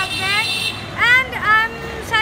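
A woman speaking, with faint street traffic behind.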